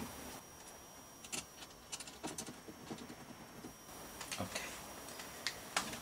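Faint, scattered small metal clicks and taps of hands working on a BMW E46 window regulator mechanism inside a stripped car door.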